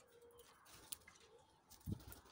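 Mostly quiet, with faint bird sounds: a short, low, steady call at the start, a single click about halfway, and a dull thump just before the end.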